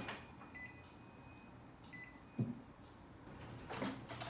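Two short electronic beeps, about a second and a half apart, from an Epson all-in-one printer's control panel as its buttons are pressed, with a soft knock shortly after the second beep.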